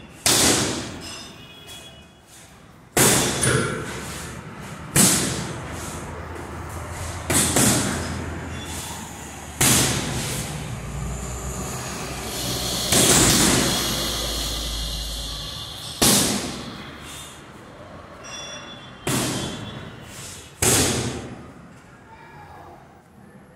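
Boxing-gloved punches landing on a hanging heavy bag: about ten hits, single punches and short combinations spaced one to three seconds apart. Each hit is a sharp thud with a brief ringing tail, with a longer run of punches near the middle.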